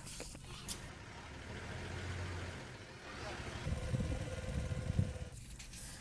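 Faint outdoor ambience with the low rumble of a motor vehicle engine, swelling a little in the second half.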